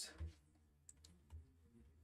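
Near silence: room tone with a few faint clicks around the first second.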